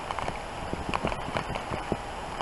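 Crunching and soft thuds of movement through deep snow, coming as a string of irregular short steps.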